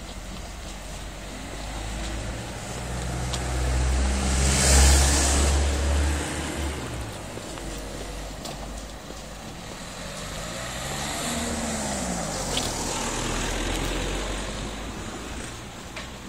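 Motor vehicles driving past on the street: one louder pass peaks about five seconds in, and a second engine swells from about ten seconds and fades near the end.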